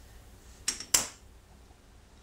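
Two sharp metal clacks of a hand tool being put down, about a quarter second apart, the second louder. The tool is most likely a long torque wrench.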